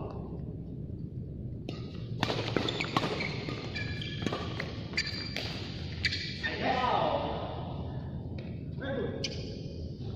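Badminton rally: a run of sharp racket strikes on a shuttlecock from about two to seven seconds in, with shoes squeaking on the court floor and a voice calling out near seven seconds.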